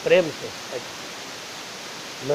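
A man's voice speaks a few syllables at the start, then only a steady low hiss of room noise remains.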